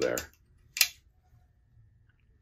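A man's voice finishing a word, then one short hissing sound about a second in, then quiet room tone.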